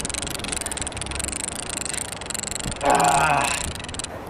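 Big-game conventional fishing reel ticking rapidly, its clicker running as the spool turns with a large white sturgeon on the line. A person's voice is heard briefly about three seconds in.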